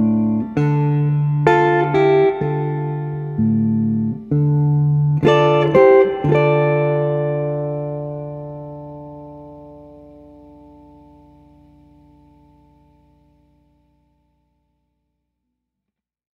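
Guitar playing the closing notes of the song: a few plucked notes and chords, then a final chord left ringing that fades slowly away to silence.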